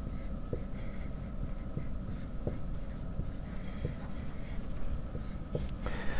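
Dry-erase marker writing on a whiteboard: a run of short scratchy strokes, with a few light clicks as the tip meets the board.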